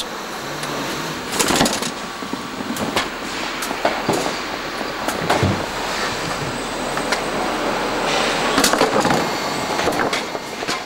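Powered roller conveyor running, a steady rolling noise with scattered clacks and knocks as plastic totes travel over the rollers.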